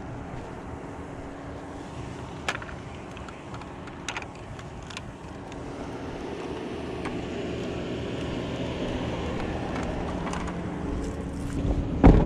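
Steady hum of a vehicle engine running, with a few short clicks and knocks of objects being handled.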